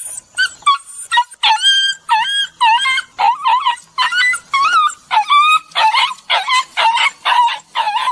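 A dog yipping and whining in a fast series of short, high-pitched calls, about two or three a second, each one bending in pitch.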